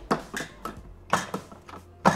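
A series of light clicks and knocks from the plastic lid of a Bimby (Thermomix) TM6 being lifted off the steel mixing bowl and fitted back on, the strongest a little over a second in.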